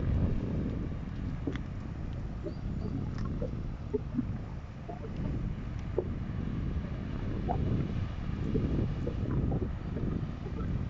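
Wind buffeting the microphone: a low rumble that swells and eases in gusts.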